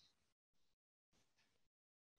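Near silence, broken by three faint, brief blips of noise.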